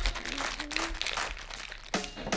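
Plastic crinkling from a clear gel pouch squeezed and kneaded in a child's hands: a dense run of small crackles as she presses to break the seal inside and mix the gel.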